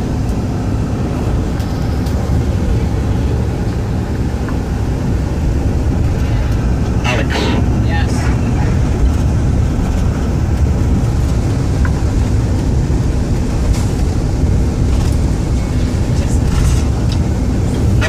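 Steady low rumble of a coach bus's engine and tyres on the road, heard from inside the passenger cabin.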